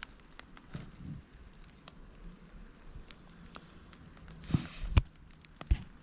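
Faint scattered ticks and crackles over a quiet outdoor hiss, with a sharper click about five seconds in.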